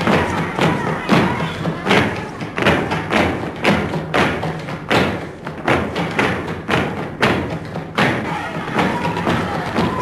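A group of flamenco dancers stamping their heels on the floor together in a steady rhythm, about two heavy stamps a second, with a voice held on one note near the end.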